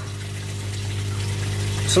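Steady low electric hum from the aquaponic system's pump, with a faint background hiss.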